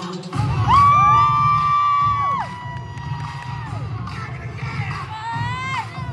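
Several spectators whooping long, high 'woo' cheers over dance-routine music with a steady beat. The overlapping whoops rise, hold for one to three seconds and fall away, and another rising whoop comes near the end.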